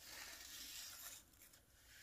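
Faint soft rubbing of a tack cloth drawn lightly over freshly painted motorcycle frame paint, lifting the last dust and fibres before clear coat; it fades after about a second.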